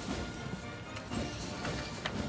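Military band playing march music, faint.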